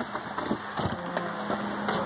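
Wooden shop door being opened and footsteps on wooden floorboards, heard as a few scattered knocks.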